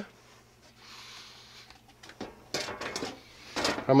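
Light knocks and clatter of a wooden crate being handled and shifted, beginning about two seconds in after a quiet stretch, in a few short clusters.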